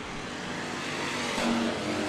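Engines of IMCA Hobby Stock race cars running in a pack on a dirt oval, a steady mixed drone that grows somewhat louder toward the end.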